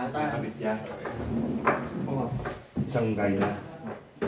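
Men talking, with a short sharp knock about one and a half seconds in.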